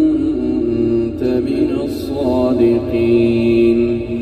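A male reciter chants the Quran in melodic tajweed style, holding long notes that slide from one pitch to another. It is played back inside a moving car.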